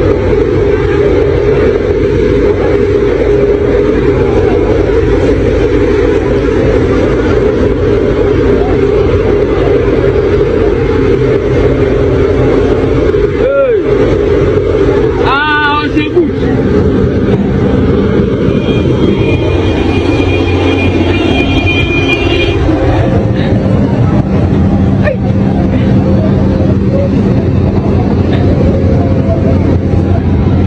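An engine running steadily, with people's voices over it and a rising and falling call about fifteen seconds in.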